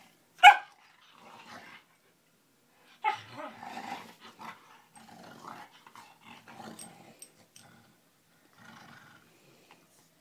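Dogs at rough play: one short, sharp bark about half a second in, then growling on and off for several seconds, with a brief growl again near the end.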